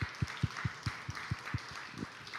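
A church congregation applauding, with steady single claps at about four to five a second standing out over the general clapping.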